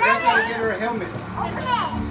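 Overlapping voices of adults and young children talking, with high-pitched children's voices among them.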